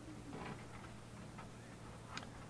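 Faint room tone with a low, steady hum.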